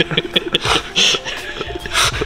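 Breathy laughter and snorts over background music.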